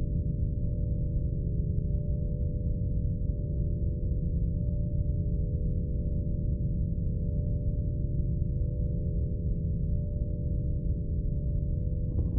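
Low, steady ambient drone of sci-fi film sound design: layered sustained tones, with a faint higher ring that pulses about once a second.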